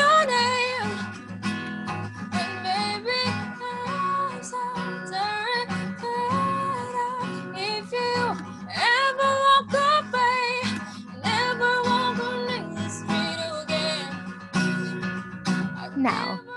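A woman singing solo while accompanying herself on an acoustic guitar, with long held notes in the vocal line.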